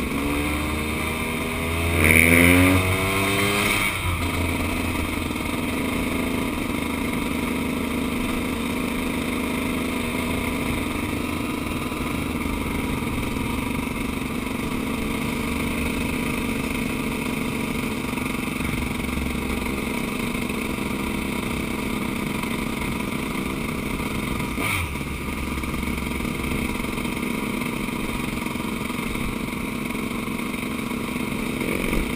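KTM 200 two-stroke dirt bike engine under way: its revs climb in a couple of quick rising sweeps about two seconds in as it accelerates through the gears, then it settles into a steady cruise.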